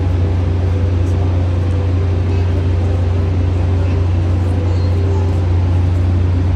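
A loud, steady low drone fills the space without a break, with a faint murmur of voices under it.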